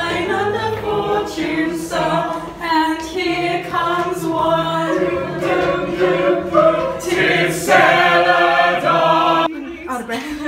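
A group of voices singing together without accompaniment, holding sustained chords in several parts. The singing stops abruptly near the end.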